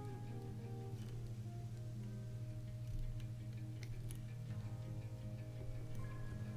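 Soft background music with plucked guitar-like notes over a steady low hum, with a few faint clicks.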